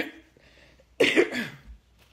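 A woman coughing twice, about a second apart, each cough short and sharp.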